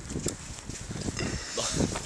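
A person close to the microphone laughing in short, irregular bursts.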